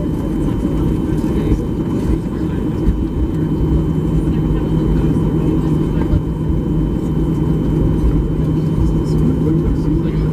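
Cabin noise of a Boeing 737-800 taxiing, heard from a window seat over the wing: a steady rumble from its CFM56 engines at taxi power. A steady low hum joins about three seconds in.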